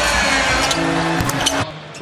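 Loud arena crowd noise from a basketball broadcast, with a few held music notes playing over it in the middle. It all cuts off abruptly about one and a half seconds in.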